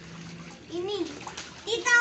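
Young children's short wordless calls, a louder high-pitched one near the end, over light splashing of water in a small plastic paddling pool.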